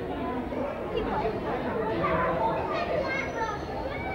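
Indistinct chatter of several voices, adults and young children, with no clear words.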